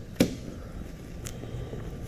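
Handling noise: one sharp click shortly after the start and a fainter tick about a second later, over low room noise.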